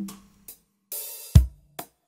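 Sparse drum-kit playback from a multitrack mix: a short tick, a bright cymbal wash, then a deep kick-drum thud about a second and a half in, followed by another light tick.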